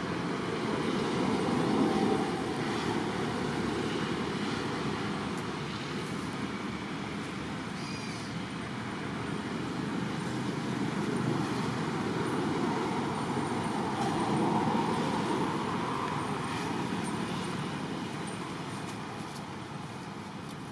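Background road-traffic noise: a steady rushing that swells and fades, as if vehicles were passing. A brief high chirp about eight seconds in.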